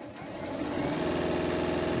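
Janome Continental M7 Professional sewing machine stitching a seam. It speeds up over about the first second to a steady, fast run.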